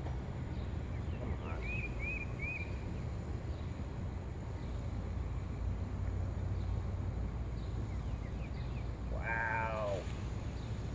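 Steady outdoor background noise, with a bird chirping three quick times about two seconds in and a short animal call near the end.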